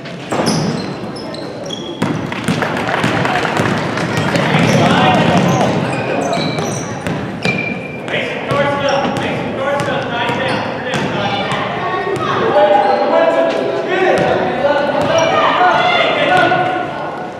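Youth basketball game: spectators and players shouting over the play, with the basketball bouncing on the hardwood court and short high sneaker squeaks.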